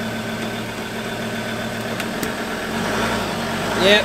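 Ford Ranger Wildtrak's engine running at low revs while the bogged ute is eased forward in mud onto recovery boards. The note picks up slightly near the end, and there are a couple of faint clicks midway.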